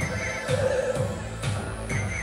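Live electronic music with a steady beat and deep bass. A high wavering, whinny-like tone sounds briefly at the start and again just before the end.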